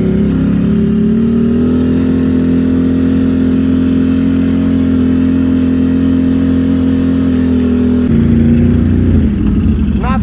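ATV engine under way on a trail, rising in pitch over the first couple of seconds, then holding a steady note. About eight seconds in, the note shifts and gets a little louder.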